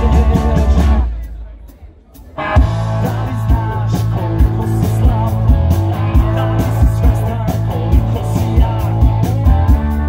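Live rock band playing electric guitars, bass guitar and drum kit. About a second in the band stops and the sound dies away, then the full band comes back in with a drum hit about two and a half seconds in and plays on to a steady beat.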